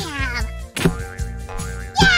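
Upbeat background music with a steady beat. Over the first half second, a stretched balloon neck squeals as air rushes out of the loose balloon, its pitch sliding steeply down.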